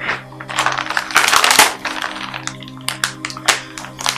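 Film background music holding steady low sustained notes, over a run of sharp clicks and taps that are densest a little past a second in.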